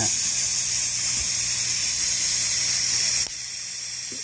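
High-voltage corona discharge from a homemade ion generator's sharp crown electrode, fed by a 40,000-volt supply, making a steady hiss over a low hum. It gets quieter about three seconds in.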